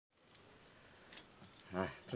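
Faint handling noises: a light click, then a short metallic jangle of clicks about a second in. Near the end, a man's voice begins.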